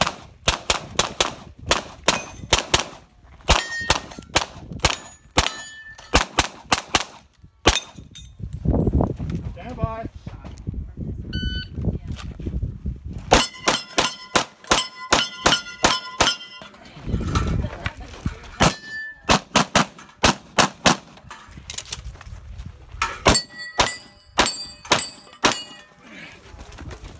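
Rapid strings of pistol shots, with hit steel targets ringing after many of them. The shots pause briefly near the middle, then resume in fast bursts.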